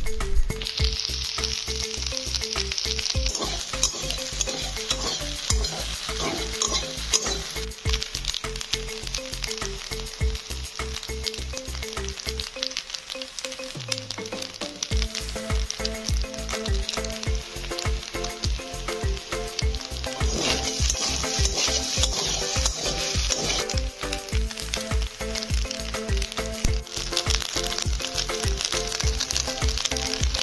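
Macaroni pasta sizzling as it fries in a steel kadai and is stirred with a spatula. The sizzle swells at the start, again about two-thirds of the way through and near the end.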